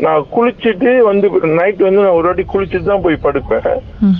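Speech only: a person talking continuously, with no other sound.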